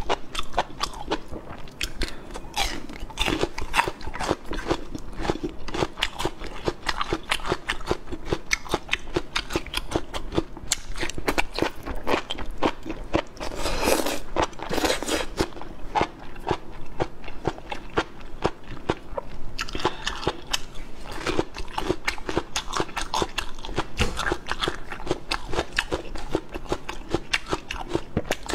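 Close-miked crunching and chewing of whole raw shallots coated in chili sauce: a dense run of crisp bites and chews, with a louder stretch around fourteen seconds in.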